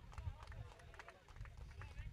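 Faint outdoor ambience: an irregular low rumble on the microphone, faint distant voices and a few light clicks.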